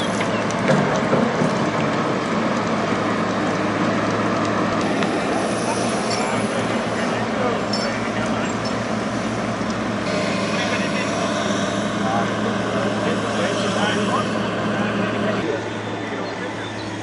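Diesel engine of a hydraulic excavator running steadily, with people talking in the background.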